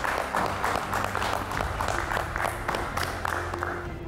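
Several people clapping in applause, a dense patter of hand claps, over a steady background music bed.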